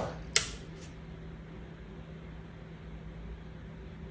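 Bench power supply feeding the MHD thruster's electrodes: a single sharp click of its switch a moment in, then a steady low hum.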